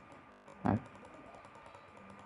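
Faint, rapid clicking of a computer mouse button as short dashes are drawn one after another, with one brief louder sound about two-thirds of a second in.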